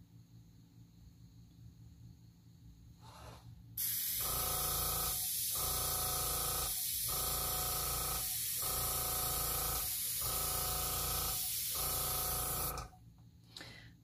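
Airbrush blowing a steady hiss of air over wet alcohol ink, starting about four seconds in and stopping about a second before the end. Under the hiss a pitched hum cuts in and out about every second and a half.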